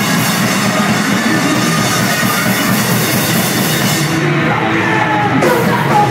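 Live punk rock band playing loud with drums and guitars. The cymbals drop out for a moment near the end, and then a shouted vocal comes in.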